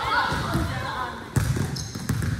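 Basketball dribbled on a hard gym floor: a few echoing bounces, the loudest about two-thirds of the way through.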